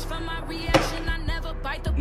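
Background music, with a single sharp knock about three quarters of a second in.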